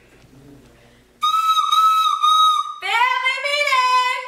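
A high, whistle-like tone held for about two seconds, then a lower note that glides up and bends.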